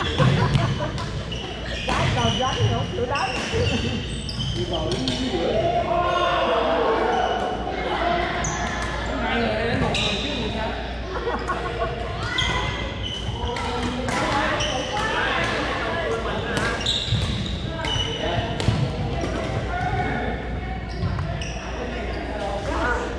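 Pickleball paddles hitting the hollow plastic ball in a run of sharp pops, with more hits from neighbouring courts, echoing in a large gym.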